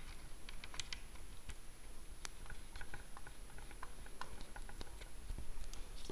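Light, irregular clicks and taps of small metal parts handled by fingers as the displacement lubricator cap is put back on a model live-steam traction engine.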